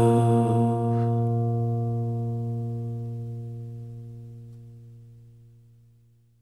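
Acoustic guitar's final strummed chord ringing out and fading slowly to silence over about six seconds, ending the song.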